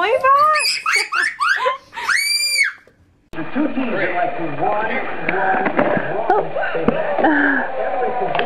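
A baby babbling, rising into a short high-pitched squeal about two and a half seconds in. After a brief break, duller-sounding voices and baby sounds in a small room follow to the end.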